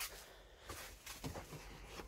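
Faint, scattered rustles and soft taps of a person moving about and handling things in a small room.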